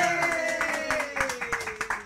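A small group clapping by hand in a small room, with one voice holding a long cheer that slowly falls in pitch.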